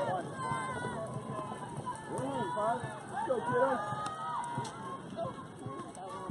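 Several people calling out and chattering, with no clear words: shouts and chatter from softball players and spectators.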